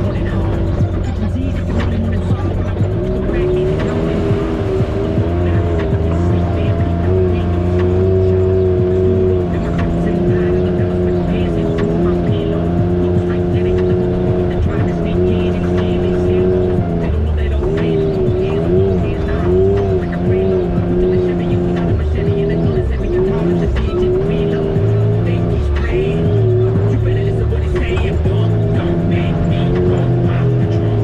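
Can-Am Maverick X3's turbocharged three-cylinder engine running continuously, its pitch rising and falling with throttle as the side-by-side drives over a rocky dirt trail, heard from the cab with background music also present.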